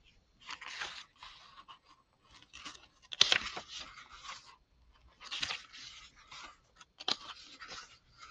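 Paper pages of a small hardbound booklet being turned and flicked through by hand, in a few short rustling bursts; the loudest is a crisp flick about three seconds in.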